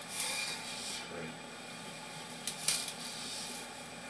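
Sewer inspection camera's push cable being drawn back through a six-inch drain line: steady rubbing and scraping, with a sharp click a little before three seconds in.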